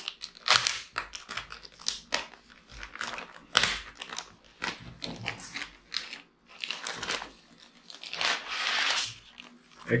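Plastic bag crinkling and rustling in many short bursts as it is handled and pulled off a drone, with a longer rustle near the end.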